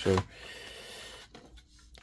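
Faint handling noise: hands rubbing on the plastic battery pack of a Dyson V7 stick vacuum for about a second, then almost quiet.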